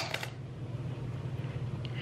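Quiet room with a steady low hum and a couple of faint clicks from a cardboard perfume box being handled.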